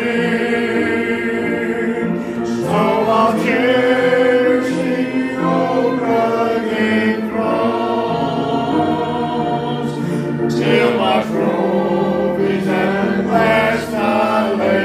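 A congregation singing a hymn together in sustained, held notes.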